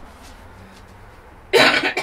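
A single cough, short and loud, about one and a half seconds in, after a stretch of quiet room tone.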